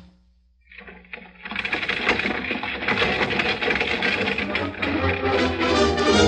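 Radio-drama scene transition: after about a second of near silence, a stagecoach sound effect with rapid hoof and wheel clatter rises under a dramatic music cue and grows steadily louder.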